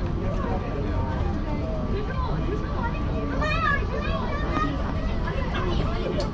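Indistinct chatter of people in an airport terminal over a steady low rumble.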